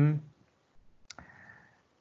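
A single sharp click about a second in, from a computer mouse button.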